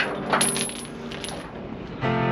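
Steel tie-down chain clinking and rattling as it is handled, a quick run of sharp metallic clinks that dies away in the second half.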